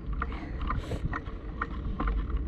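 Jogging footsteps on brick pavers: a regular light tap a little over twice a second, over a steady low rumble of wind and camera movement.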